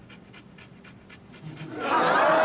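A quick, even run of faint wet kissing and sucking sounds as lips press against a mannequin's neck.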